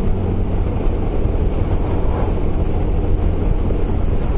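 SYM Maxsym 400 scooter engine running steadily at cruising speed, with wind rushing past from riding at road speed.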